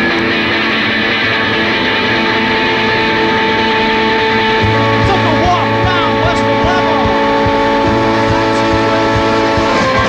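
Live rock band playing the instrumental opening of a song: long held guitar notes ring over one another, and a steady low bass note comes in about halfway through.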